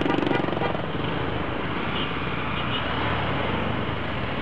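Motorcycle engine idling close by, amid the steady noise of a traffic jam of idling scooters and cars.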